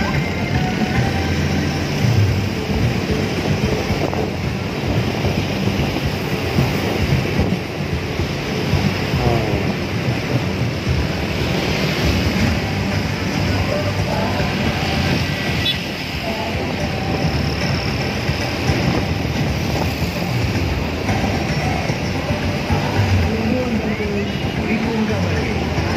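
Wind rumbling on the microphone and road traffic noise while riding in an open vehicle, with music and voices mixed in.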